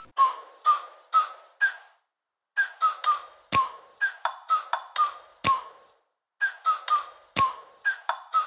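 Intro music: a repeating figure of short ringing notes at about two a second, with a sharp percussive hit about every two seconds. The figure breaks off briefly twice.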